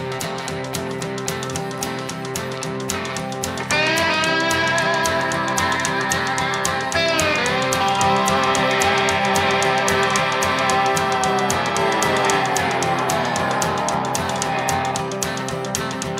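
Rock music: electric guitar playing lead lines with string bends and a long downward slide, over a full band with a steady beat. The band gets louder about four seconds in.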